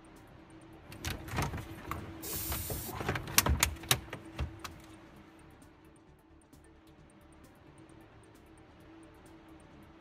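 Plastic dashboard shelf cover of a Mercedes Actros MP4 cab being lifted out: a run of clicks, knocks and a short scraping rustle in the first half, freed from its clips.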